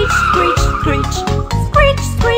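Cartoon tire-screech sound effect, a high squeal that slides slightly down in pitch over about the first second, laid over a bouncy children's song with a steady beat. Singing comes back in after it.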